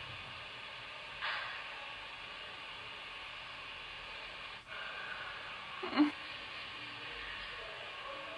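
Steady low hiss of room tone, broken by a quick sharp breath about a second in and a short, louder gasp about six seconds in: a person reacting tensely without words.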